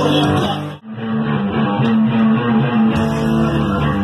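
Live nu-metal band playing loudly, with electric guitar and bass guitar. About a second in, the band stops dead for a split second, then the guitar comes back in on a long held note.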